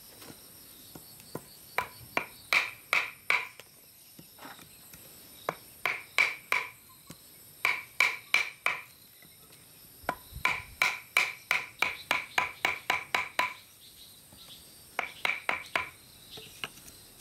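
A steel blade being driven into a log round with blows from a mallet to split it: a series of sharp knocks, each with a brief ring, in runs of several blows with short pauses, the longest and quickest run about halfway through. Insects drone steadily behind.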